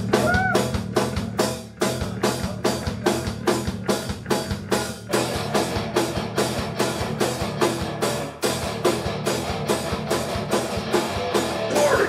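Live rock band playing loud: a drum kit keeps a steady driving beat of about three hits a second under electric guitars.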